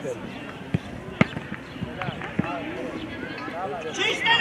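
Scattered voices of players and spectators calling out across an outdoor football pitch, with three sharp knocks in the first few seconds.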